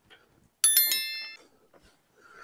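A single bright bell chime, struck once just over half a second in and ringing out over about a second: the notification-bell sound effect of a subscribe-button overlay.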